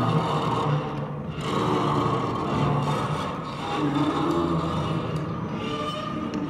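Orgue de bois, an instrument of wires strung to curved wooden slats, played by drawing rods along the wires. It gives a rasping, scraping drone with several held pitches, in overlapping strokes of about a second each.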